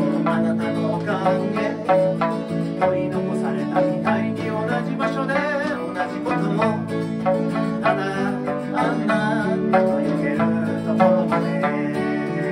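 Live acoustic band music: two acoustic guitars strummed and picked, with the twangy plucked notes of an Okinawan sanshin, while a man sings a slow love song.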